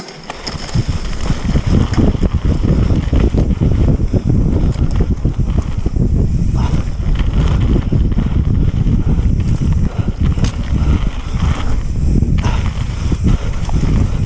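Wind buffeting a bike-mounted action camera's microphone, mixed with a mountain bike's tyres rumbling over a dirt trail at speed, with scattered clicks and rattles from the bike. The rumble builds up over the first couple of seconds as the bike gathers speed and then stays loud and unsteady.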